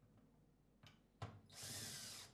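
Cordless drill-driver driving a screw to secure the front cover of a battery box: a light click, then a sharp knock, then the drill running briefly for under a second near the end.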